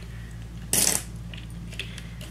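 A brief clattering clink of small makeup items handled on a hard surface, about a second in, followed by a few faint clicks, over a steady low hum.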